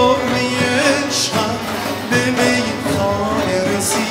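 Live Persian ensemble music: a male vocalist sings a wavering, ornamented melodic line over a bowed kamancheh and plucked lutes, with a couple of sharp percussion strokes, one about a second in and one near the end.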